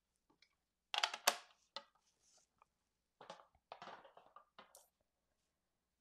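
White cardstock being folded along a fresh score line: a sharp crackle about a second in, then softer rustling and crackling a couple of seconds later as the fold is worked.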